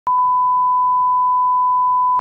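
Steady line-up test tone of colour bars and tone: one unbroken beep held at a single pitch.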